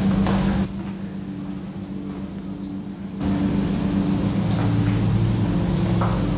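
A steady low machine hum with a few fixed tones, growing louder about three seconds in, with a short rush of noise right at the start.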